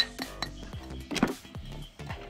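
A few sharp taps of a small plastic rock hammer on a hardened sand block, the first one loudest, over background music.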